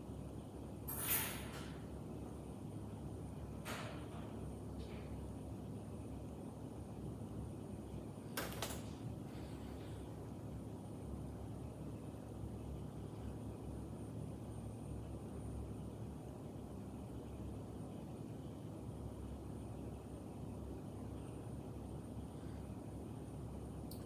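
Faint steady low hum with a few short hissing breaths, about one, four and eight and a half seconds in, from a man breathing after hard exercise.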